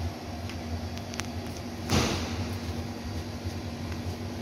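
A small cardboard box being handled and opened, with a few light clicks and one loud knock about halfway through, over a steady low hum.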